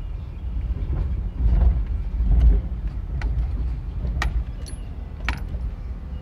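Road and engine noise inside a moving car's cabin: a steady low rumble that swells briefly about two seconds in. In the second half come several sharp metallic clicks and jingles, five or so, from something rattling in the cabin.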